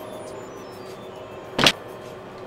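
Light background music with a short falling run of high chime-like notes, then one sharp knock near the end as a wooden shower-room door is shut.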